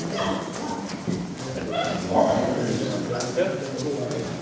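Pulis barking a few times in short bursts, with people talking in the background.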